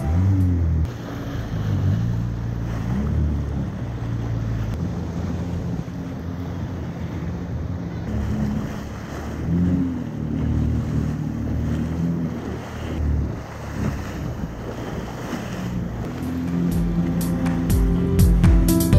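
Yamaha 1800 jet ski running at cruising speed, its engine note rising and falling with the throttle, over the rush of spray and water and wind on the microphone.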